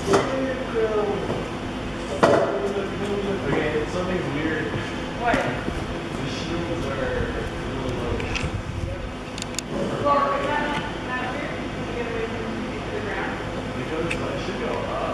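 Indistinct voices of several people talking, with a few sharp knocks at the start, about two seconds in and about five seconds in.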